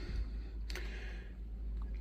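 Quiet room tone with a low hum and a single faint click about two-thirds of a second in.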